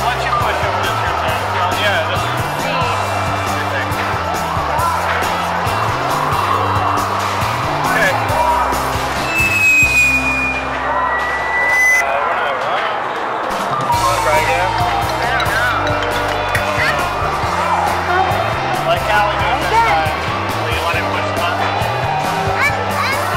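Busy arcade din: background music with a stepping bass line over the chatter of a crowd and game-machine sounds, with two short high electronic tones about ten seconds in.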